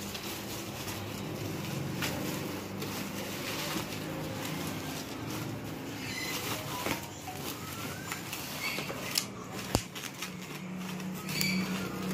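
Bubble wrap and clear plastic film being pulled apart and unwrapped by hand, giving an irregular rustling and crinkling, with a low steady hum underneath and one sharp click near ten seconds.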